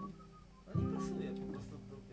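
Upright piano playing sustained chords, with a new chord struck about three-quarters of a second in, as an instrumental introduction before the singing.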